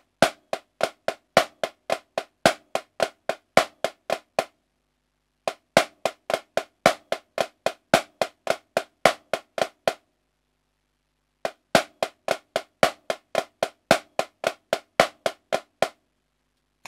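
Marching snare drum played with sticks, working through the second bar of the choo-choo moving rudiment: a right-hand stroke and then left-handed choo-choos. The bar is played three times. Each run is about four seconds of even strokes, about five a second with regular accents, and about a second of silence separates the runs.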